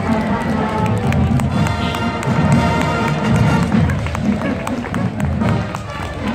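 Marching band music playing down the street, over steady crowd chatter from spectators.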